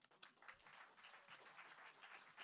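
Faint audience applause: many scattered hand claps.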